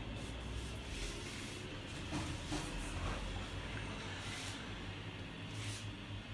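Faint handling noise, a few light irregular knocks and rustles, as a small plastic keepsake container is picked up and turned in the hands, over a low steady hum.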